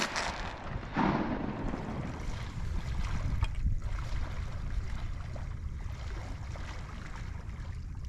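Wind rumbling on the microphone over marsh water sloshing, with a louder burst of noise about a second in.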